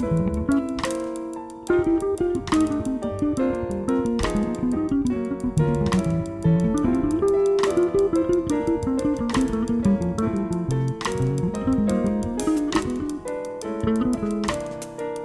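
Instrumental jazz by a small band: a busy plucked-string line moving up and down over drums and cymbals.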